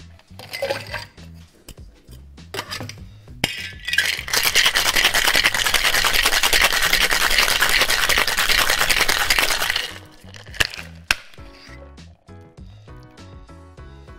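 Ice clinking into the glass of a Boston cocktail shaker, then the shaker being shaken hard with ice for about six seconds, a dense rapid rattle. Near the end, a couple of sharp knocks as the shaker is opened.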